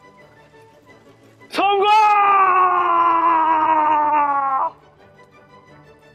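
A man's long drawn-out shout, starting about one and a half seconds in and held for about three seconds as its pitch slowly falls, over faint background music.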